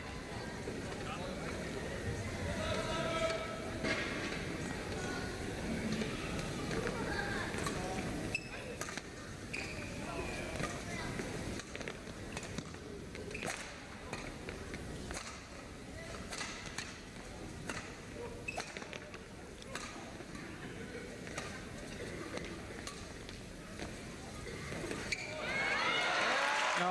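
Badminton singles rally: rackets striking the shuttlecock in sharp hits roughly a second apart, over the murmur and voices of the arena crowd.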